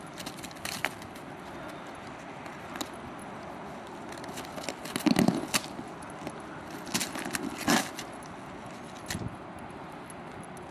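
A dog digging and pawing at ice-crusted snow: scattered crunches and scrapes as the frozen crust breaks, the loudest about five seconds in and again near eight seconds.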